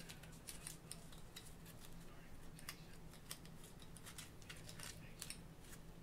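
Faint, irregular light clicks and rustles of fishing line and terminal tackle being wrapped around a foam pipe-insulation tube for rig storage, over a low steady hum.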